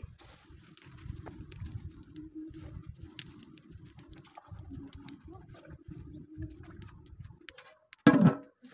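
Open wood fire crackling with scattered sharp pops, over a quieter, uneven low rumble.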